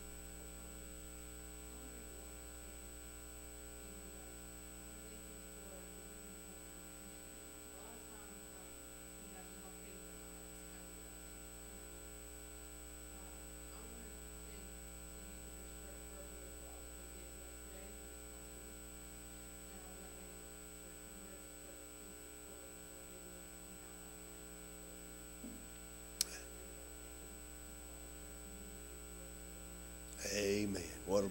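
Steady electrical mains hum from the sound system, with a faint voice speaking well away from the microphone underneath it. There is one sharp click near the end.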